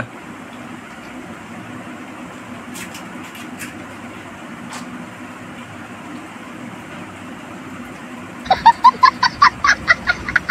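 A meme clip of a small child laughing hysterically, edited in: loud, high, honking peals of laughter in quick repeated ha's, starting about eight and a half seconds in. Before it there is only a low steady room hiss with a few faint clicks.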